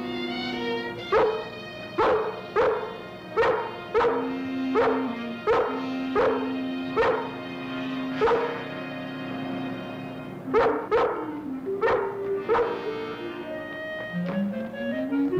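Orchestral TV score: held chords under a run of sharp, accented notes about every three-quarters of a second, pausing for about two seconds near the middle before four more.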